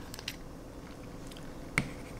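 Faint handling clicks of a metal handheld laser pointer as its switch-end tail cap is unscrewed to reach the battery compartment, with one short sharp click near the end.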